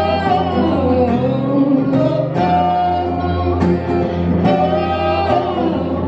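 Live acoustic band music: a woman singing held, wavering notes, accompanied by acoustic guitar and a Nord Electro 6 keyboard.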